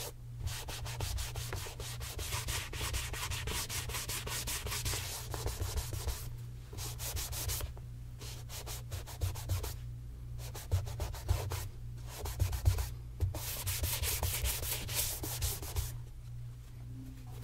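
A cloth rubbed briskly back and forth over the leather upper of a tassel loafer: a dry, rapid swishing with a few short pauses.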